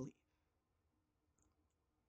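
Near silence: room tone with a few faint clicks about one and a half seconds in.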